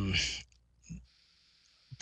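A man's speaking voice trailing off on a hesitant "um", then a pause of about a second and a half, broken only by a faint click.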